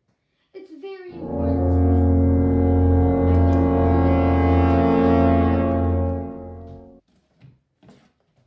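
A dramatic sound effect: one deep, horn-like blast held for about six seconds, swelling in about a second in and fading out near the end.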